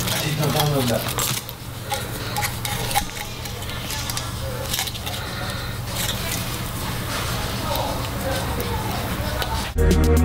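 Small clicks and scratches of a craft knife and vinyl wrap film being handled on a plastic megaphone handle, over a steady low hum and indistinct background voices. Loud electronic music cuts in just before the end.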